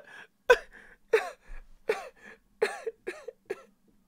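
A dog barking six times in quick succession, each bark sharp and dropping in pitch, the later barks quieter.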